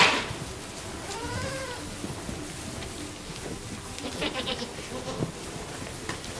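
Goats bleating in a crowded pen: a loud cry right at the start, a call that rises and falls about a second in, and another bleat around four seconds in.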